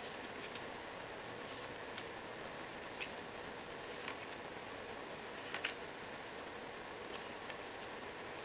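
Faint taps and soft rustles of cardstock journaling cards being handled and set down one at a time on a table, a few scattered light clicks over a steady low hiss.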